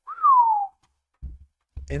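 A single short whistle, a clear note that rises briefly and then glides down in pitch, lasting about half a second. A second later come a few low thumps from the microphone being moved.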